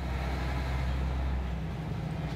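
Refuse truck's diesel engine running steadily, a low rumble heard from inside the cab as the truck drives along.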